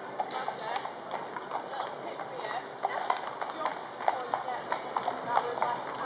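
Several shod cavalry horses walking on a paved road, hooves clip-clopping in an uneven patter, mixed with people's voices.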